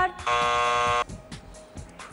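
Game-show answer buzzer sounding once, a steady buzzing tone lasting just under a second, as a contestant buzzes in to answer. Faint background music runs underneath.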